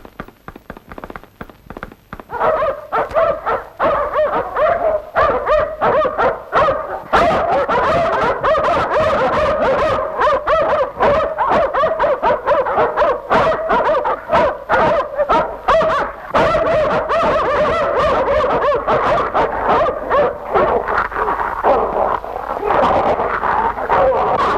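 A dog barking without a break as it attacks a man, starting about two seconds in, on an old, hissy film soundtrack. Quieter clicks come before the barking.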